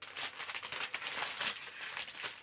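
Plastic packaging of cross-stitch kits crinkling and rustling as the packs are handled and moved, a steady run of small crackles.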